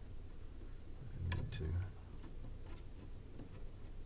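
Light scattered clicks and scrapes of the sustain-pedal linkage, a steel rod worked up through a lever arm into a wooden rod under an upright piano, handled by hand. A brief voiced sound from the worker comes about a second in.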